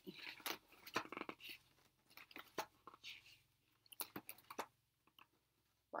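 Pages of a spiral-bound quilt pattern book being leafed through and handled: a string of faint paper rustles and light clicks, pausing briefly near the end.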